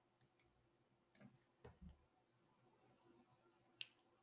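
Near silence with a few faint computer mouse clicks, the sharpest one near the end.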